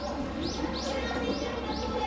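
A small bird chirping repeatedly: a series of short, high chirps, about two a second, over a steady background din.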